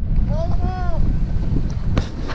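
Wind buffeting the camera microphone, a heavy, steady low rumble. A short high-pitched call comes through it about half a second in.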